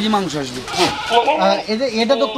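A goat bleating: one wavering, quavering call about halfway in, over men's voices.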